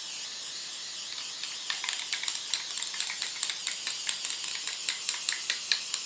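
Krylon aerosol spray paint can spraying continuously, a steady hiss, with quick irregular ticks joining in about two seconds in.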